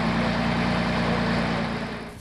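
Fire brigade aerial ladder truck's diesel engine running steadily, a deep engine drone with a dense hiss over it, dropping away right at the end.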